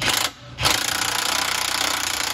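Cordless impact wrench hammering on a bolt under a car: a short burst, a brief pause, then a long steady rapid rattle.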